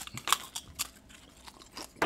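Mouths chewing queso-dipped tortilla chips: a run of irregular crisp crunches, loudest in the first second.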